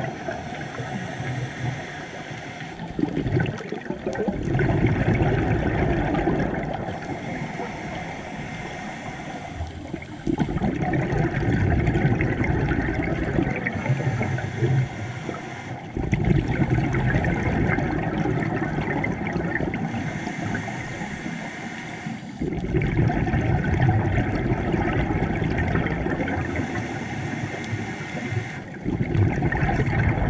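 Scuba diver breathing through a regulator underwater, about five breaths, one every six seconds or so. Each breath is a quieter hiss on the inhale, then a louder rush of bubbling exhaust that starts abruptly.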